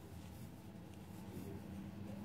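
Faint soft rubbing and scratching of yarn drawn over a crochet hook and through the fingers as treble stitches are worked, over a low steady hum.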